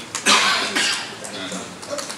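A man coughs into a handheld microphone about a quarter second in: one loud, rough burst that fades within about half a second.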